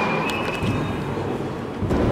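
Steady background rumble and hubbub of a large indoor public hall, with a couple of faint clicks about half a second in.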